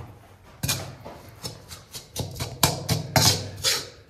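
Metal spoon scraping and stirring moist soil and Portland cement in a steel pan, in a string of irregular strokes about two a second, as the water is worked into the mix.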